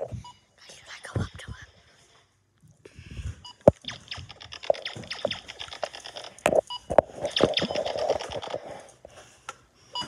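Handheld phone microphone being rubbed and knocked while the phone moves: scraping rustle with several sharp knocks, one brief quiet gap early on, and a denser scratchy stretch in the second half.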